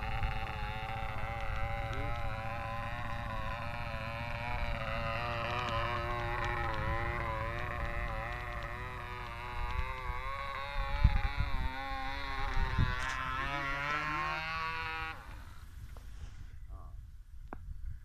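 Small motor and propeller of a free-flight model airplane buzzing at a steady high pitch as the model climbs and circles, the pitch wavering gently up and down as it turns. The buzz cuts off suddenly about 15 seconds in, where the motor run ends and the model is left to glide.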